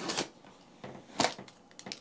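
A few short scrapes and taps of fingers and paper on a cardboard box as a paper stop tab is pulled from its slide lock. The sharpest comes about a second in.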